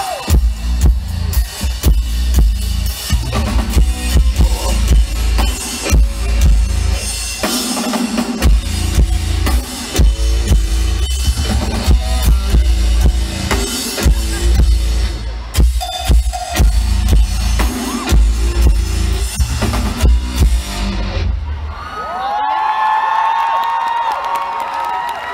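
Rock band playing live: heavy drum kit and bass guitar, loud and bass-saturated as heard from within the crowd. About twenty-two seconds in, the band stops and the crowd cheers.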